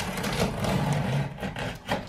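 Flaps of a large cardboard box being pulled open by hand, the cardboard scraping and rustling without a break.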